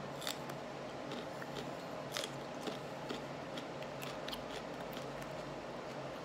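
A raw serrano pepper being bitten and chewed: quiet, irregular crisp crunches.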